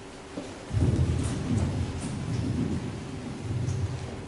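Low, uneven rumbling noise that starts about a second in and runs on.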